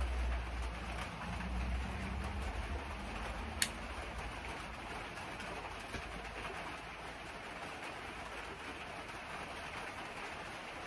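A tobacco pipe being lit with a lighter and puffed: a low rumbling draw over the first few seconds, then a single sharp click about three and a half seconds in. After that only a faint steady hiss remains.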